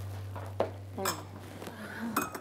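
Tableware clinking: a few short knocks, the clearest about half a second and a second in. Under them a low steady drone fades out.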